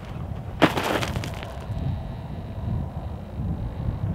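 A person falling onto dry desert ground: a single thump about half a second in, followed by wind rumbling on the microphone.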